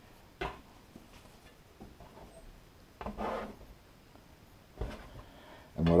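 Stainless bench scraper scraping across a wooden board and hands rubbing floured dough: a few short scrapes, about half a second in, a longer one around three seconds in, and another near the end.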